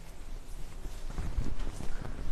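Cloth rustling with soft irregular knocks as a cotton saree is shaken out and draped over a shoulder; the handling gets louder in the second half.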